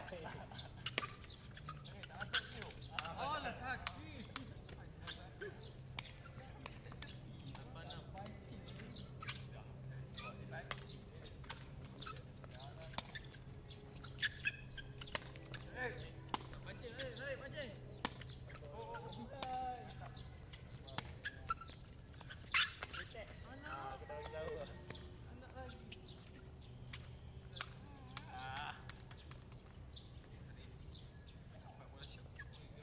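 Sepak takraw ball being kicked and headed back and forth, sharp knocks at irregular intervals with the loudest a little past two-thirds through, along with brief shouts and calls from the players over a steady low hum.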